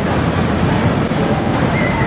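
Vekoma suspended looping coaster train running on its steel track close by, a loud steady rumble of wheels on rail.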